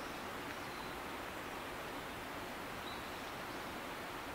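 Steady outdoor background hiss, with one faint, short high note about three seconds in.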